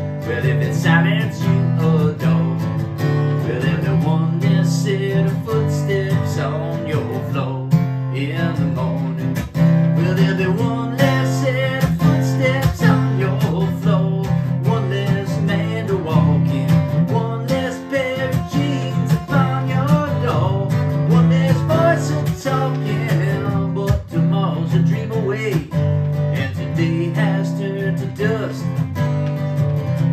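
Steel-string acoustic guitar strummed in a steady rhythm, an instrumental passage between the sung lines of a slow folk song.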